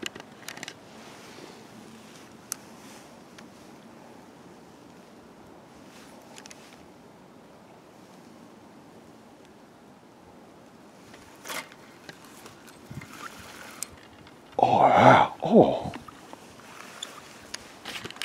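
Faint steady outdoor hiss of a stream, broken by a few small sharp clicks of rod and line handling. About fifteen seconds in comes a short loud vocal exclamation from the man, the loudest sound here.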